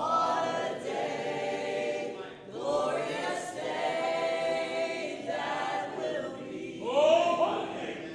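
A group of men and women singing a hymn together in church, in phrases with short breaths between them.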